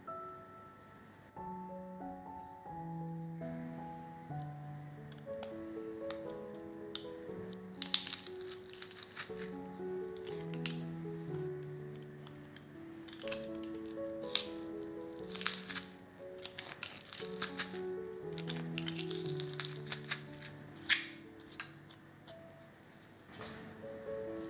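Gentle instrumental music, with sharp crackling clicks from garlic cloves being crushed in a metal garlic press: once about eight seconds in, then in several bursts later on.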